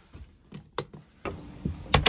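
A wall rocker light switch clicking, faint clicks about half a second in, then two louder sharp knocks near the end.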